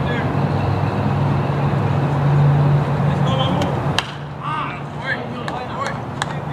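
A baseball pitch smacking into the catcher's mitt with one sharp pop about four seconds in, over a steady low hum and scattered voices around the ballpark.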